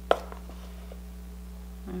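A single sharp tap of a plastic measuring spoon against a plastic mixing bowl, followed by a couple of faint clicks, over a steady low hum.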